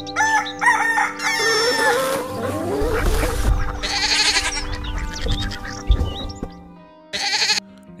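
A rooster crowing over background music.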